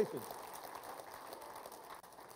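A man's spoken word trails off at the very start, then faint, even room noise with no distinct sound.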